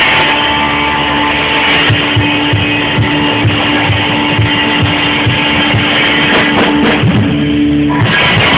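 A live band playing through PA speakers: electric guitars, keyboard and drum kit, with one long held note over a steady drum beat.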